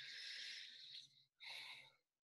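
Near silence, with two faint breathy hisses: one about a second long, then a shorter one near the end.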